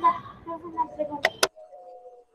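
Faint speech of a video-call participant trailing off, then two sharp clicks about a second and a quarter in, followed by a faint held tone and a near-silent gap.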